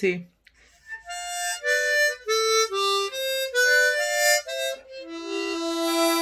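Diatonic harmonica playing a short melody in C: about ten quick notes, then one long held note near the end.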